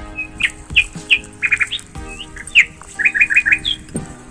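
A small bird chirping: a string of clear, short chirps and falling notes, twice breaking into quick runs of three or four notes, over soft background music.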